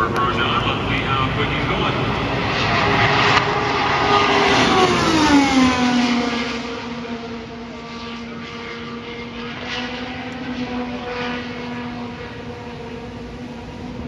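Honda IndyCar's twin-turbo V6 at full throttle passing at speed, its pitch falling steeply about five seconds in as it goes by, then a steady, fading note as it runs away down the track.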